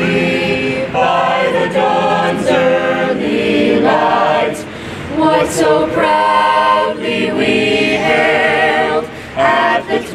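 A choir singing in held chords, with short breaks between phrases about four and a half seconds in and again near the end.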